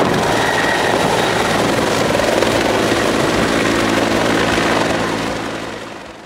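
Military utility helicopter's rotor and turbine running loudly as it lifts off and climbs away, with a steady rotor beat; the sound fades away near the end.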